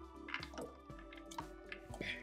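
A few small plops and splashes as effervescent tablets drop into a plastic bottle of liquid, over faint background music.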